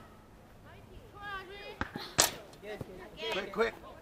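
Voices calling across a soccer field, with one sharp thump about two seconds in and a couple of fainter knocks around it.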